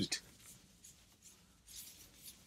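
Whiteboard duster wiping across the board: a faint, soft hissing rub that grows louder near the end.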